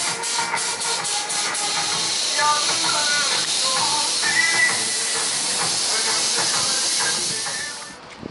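A steady, loud, high-pitched hiss of a cicada chorus, fading out near the end, with faint melodic sounds underneath.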